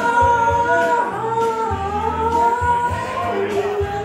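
A woman singing karaoke into a microphone over a backing track with a steady beat, holding one long note for about three seconds.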